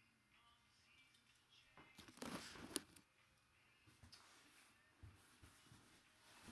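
Handling noise: a short rustle of about a second, about two seconds in, ending in a sharp click, with a few faint knocks later, otherwise near silence.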